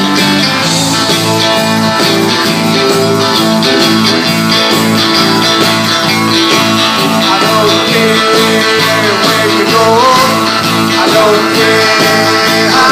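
Live rock and roll band playing loudly: electric guitars, bass guitar and drums in a steady rhythm.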